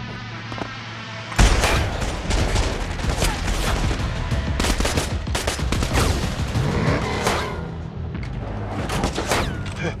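Film action soundtrack: a sudden loud hit about a second and a half in, then rapid, dense gunfire with many quick shots, mixed with score and sound effects.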